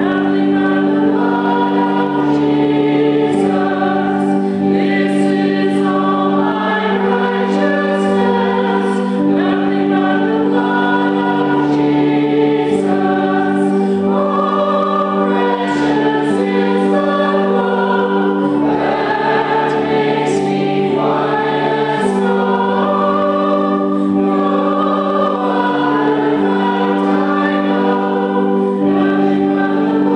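Congregational hymn singing, many voices together, over steady held chords that change every couple of seconds.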